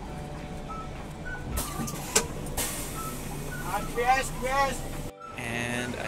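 A coach bus running, heard from inside the cabin: steady engine and road rumble, with a sharp click about two seconds in and a voice briefly near four seconds. Just after five seconds the sound cuts to an outdoor background with a man's voice.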